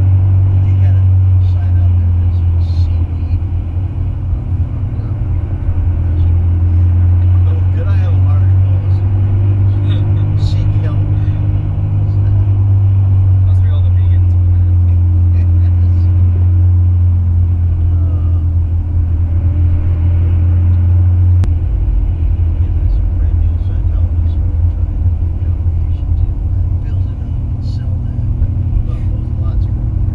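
Steady low rumble of a vehicle's engine and road noise inside the moving cabin, shifting in tone about two-thirds of the way through, with indistinct conversation under it.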